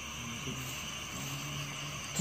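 A steady low drone with an even hiss over it, the eerie background bed beneath the narration, with no speech and no sudden sounds.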